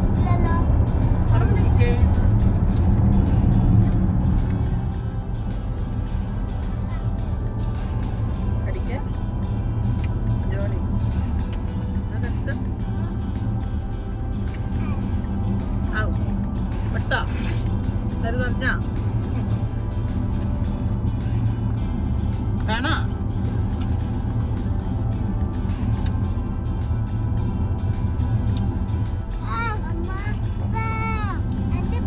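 Steady road and engine rumble inside a moving car's cabin, louder for the first few seconds. A small child gives a few brief whines over it, around the middle and again later.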